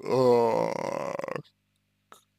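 A man's long drawn-out hesitation sound, a held 'eh-h' vowel at a steady pitch, lasting about a second and a half before it stops.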